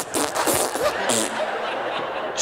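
A man and a woman laughing helplessly, in short breathy bursts of laughter.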